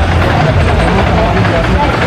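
Steady low rumble of a Flying Turns wooden bobsled coaster train rolling along its wooden trough, with people's voices over it.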